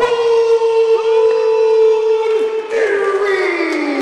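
A ring announcer's voice over the arena PA holding one long drawn-out note for nearly three seconds, then sliding down in pitch, as he stretches out the end of a wrestler's name in an introduction.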